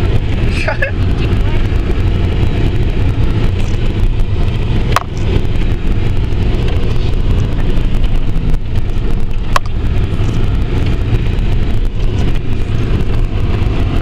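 Four-wheel drive heard from inside the cabin while descending a steep, rough dirt track: a steady low engine and drivetrain drone with road noise, and two sharp knocks about five and nine and a half seconds in.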